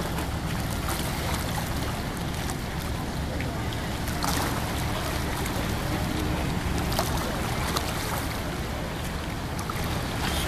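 A ship's engine running steadily as a low hum as the barque passes under power with its sails furled, with wind on the microphone and faint voices of onlookers.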